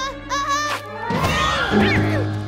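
Cartoon background music with a melodic line, then about a second in a loud burst of many voices shouting and cheering together.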